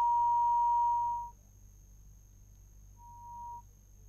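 A steady electronic beep at a single high pitch that stops about a second in, then a second, shorter beep at the same pitch about three seconds in.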